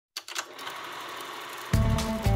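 A cine film mechanism starting and running with a fast, even clatter as film feeds through. Music with a heavy bass comes in near the end.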